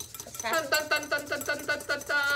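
A voice making a quick run of short pitched syllables, about eight a second, starting about half a second in.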